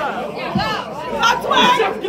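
Several voices talking and shouting over one another: crowd chatter reacting around a rapper.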